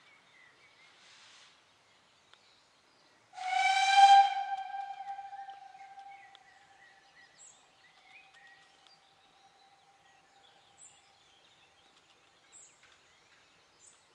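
Steam locomotive whistle on a narrow-gauge railway: one steady note that starts suddenly about three seconds in, is loud for about a second, then holds on much fainter and fades out several seconds later. A few faint bird chirps sound around it.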